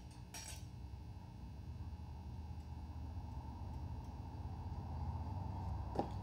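A couple of short metallic clicks about half a second in, then a steady low electrical hum from the running RF high-voltage setup that slowly grows louder.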